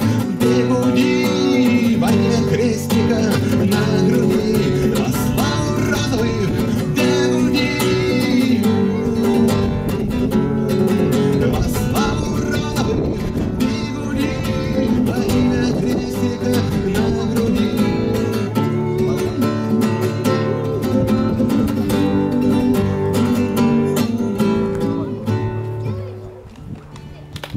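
Acoustic guitar playing an instrumental passage with no words, running on until it stops near the end.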